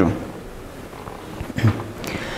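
Pause in a man's speech: low, steady room tone, broken by one short voiced sound from him about one and a half seconds in.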